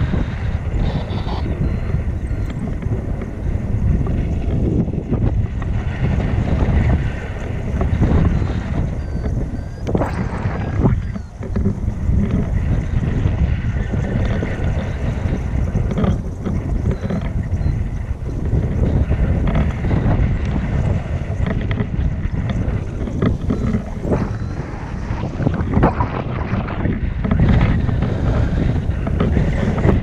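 Wind buffeting the microphone of a selfie-stick action camera on a tandem paraglider in flight: a loud, steady low rumble, briefly easing about a third of the way through.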